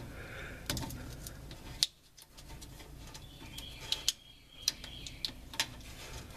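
Scattered small clicks and taps of hands working a truck's wiring close to the microphone, over a faint background.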